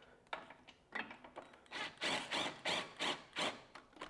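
Cordless power tool run in a series of short bursts, about three a second, as it screws a control-arm bolt through a tight-fitting subframe mount.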